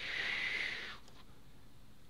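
A short, soft breath out, about a second long, followed by a faint click.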